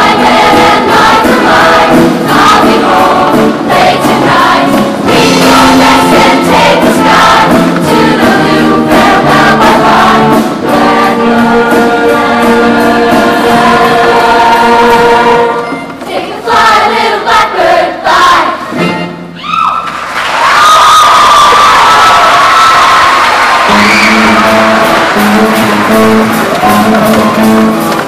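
Show choir singing in harmony over band accompaniment. About sixteen seconds in, the music breaks up for a few seconds, then starts again with held notes and a steady rhythmic accompaniment.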